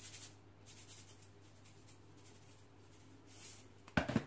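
Faint rubbing and scratching of a hand working salt into raw flatfish in a plastic tray, loudest in the first second, over a steady low hum.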